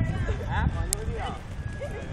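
Voices of people talking in the background, with a steady low rumble on the phone's microphone.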